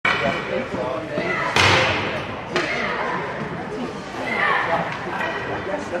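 People talking in an echoing ice rink, with a loud bang about a second and a half in and a lighter knock about a second later.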